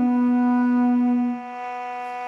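Duduk holding one long, low note over a steady drone; the note fades out about a second and a half in, leaving the drone sounding alone.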